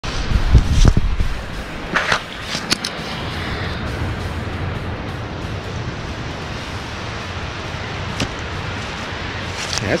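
Steady rush of wind on a phone microphone and small surf washing up on the beach. There is heavy low buffeting in the first second and a few sharp clicks about two to three seconds in.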